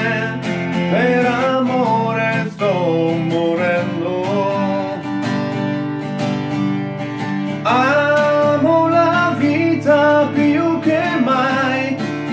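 Acoustic guitar strummed in a steady chord accompaniment, with a man singing over it.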